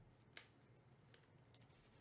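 Near silence with a few faint, sharp clicks from trading cards being handled: one clearer click about half a second in, then two softer ones past the middle.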